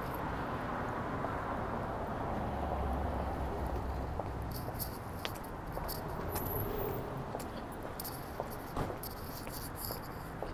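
Steady low city background rumble outdoors, an even hum with no distinct events, with a few faint ticks and brief hiss in the middle and near the end.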